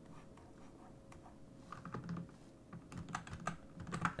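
Faint scattered clicks of a computer keyboard and mouse in use, mostly in the second half, over a faint steady hum.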